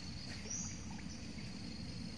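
Outdoor waterside ambience: a steady low rumble under a thin, steady high insect drone, with a short high chirp about half a second in.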